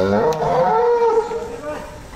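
A bovine mooing loudly: one long moo that rises in pitch at the start, holds, and dies away after about a second and a half.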